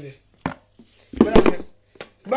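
A single sharp click about half a second in, then a brief, loud, noisy vocal sound from the woman a little past one second in, between stretches of her talk.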